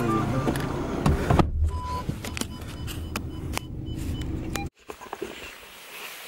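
Inside a car: a steady low engine and road rumble with scattered clicks and knocks from the camera being handled. It cuts off suddenly a little before the end, leaving a much quieter room sound.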